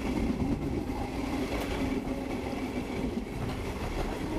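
Rovos Rail passenger train running along the track at about 60 km/h, heard from its open observation deck: a steady rumble of wheels and carriage with air rushing past.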